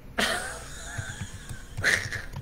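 A person clearing their throat in two harsh bursts: one about a quarter-second in with a fading tail, and another near the end.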